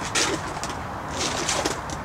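Pigeon cooing a few times over a steady low outdoor background, with short hissy noises in between.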